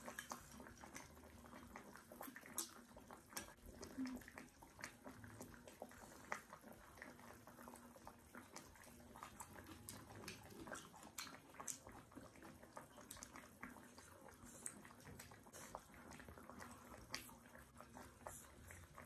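Quiet close-up eating sounds of hotpot with rice: chewing with frequent small wet mouth clicks, and wooden chopsticks moving food in the soup.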